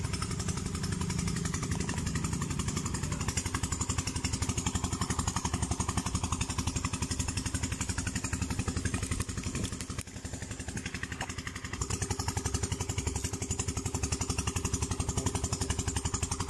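A small engine running steadily at an even idle, with a fast, regular pulse.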